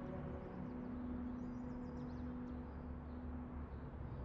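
Quiet, steady low musical drone, the lingering tail of dramatic background music, with a few faint high chirps over it.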